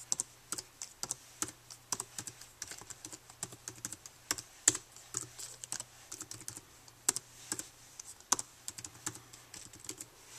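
Typing on a Mac laptop keyboard: irregular key clicks, several a second, with a few harder strokes, as a login name and password are typed in.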